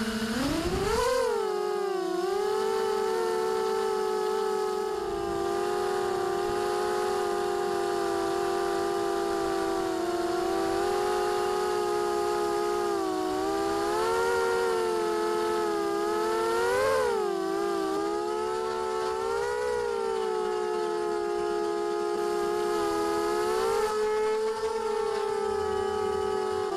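Racing quadcopter's brushless motors and propellers whining steadily, the pitch rising sharply about a second in and swelling briefly several more times as the throttle changes.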